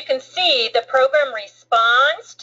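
A person's voice speaking in quick, high-pitched phrases, over a faint steady low hum.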